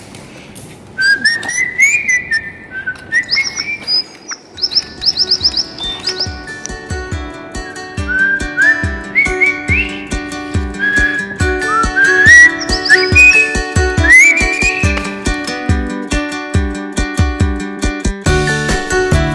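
Short, rising, bird-like whistled chirps, repeated over and over. About four seconds in, background music with a steady beat joins them and carries on under the chirps.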